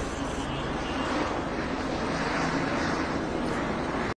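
Steady outdoor background noise: a low drone under an even hiss, unchanging throughout.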